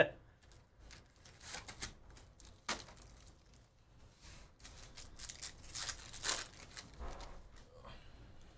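Wrapper of a trading-card pack torn open and crinkled by hand, with soft rustles of cards being handled. The crinkling comes in short bursts, loudest a little past the middle.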